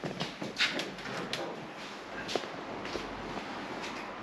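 A series of light clicks and knocks as the bonnet of a Lancia Delta Integrale is unlatched and lifted open.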